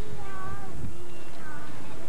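Two drawn-out, wavering voice calls carrying across an open field, the first about a quarter second in and the second past the midpoint, over a low rumble of wind and tape noise.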